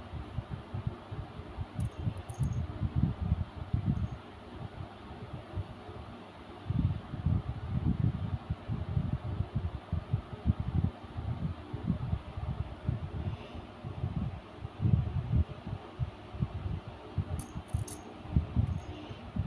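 Low, irregular rumbling and muffled bumps of handling noise on a handheld phone's microphone, with a few faint high clicks.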